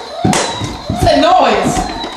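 Indistinct voices, with a few sharp thumps about a quarter second and a second in.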